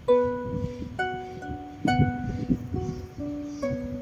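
Small harp played slowly: single notes plucked about once a second, each left to ring on under the next.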